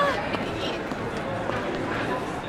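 Passers-by talking close by on a busy city street at night, over a steady murmur of other voices.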